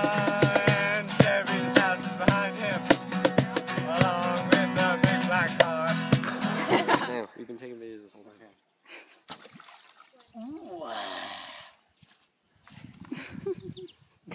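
Two acoustic guitars strummed over a cajón beat, with several voices singing, stopping suddenly about seven seconds in. Near the end there is a short splash of water, with a voice.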